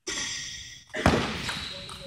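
A high-pitched squeal for about a second, then a loud thud about a second in that echoes and dies away slowly in a large hall.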